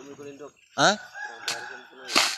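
A rooster crowing: one long, steady call starting a little past halfway. A sharp knock comes just after it begins.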